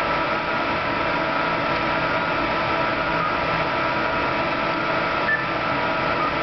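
Steady electrical hum and hiss with several held mid-pitched tones. It starts suddenly as the handheld D-Star radio is keyed up to the repeater and holds at a constant level.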